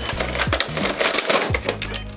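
Stiff clear plastic blister packaging crackling and crinkling as it is handled and pulled out of a cardboard toy box, with background music underneath.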